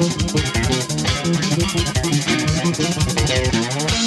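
Solo electric bass guitar, a stock Peavey Foundation strung with GHS Super Steels, playing a fast, dense run of notes.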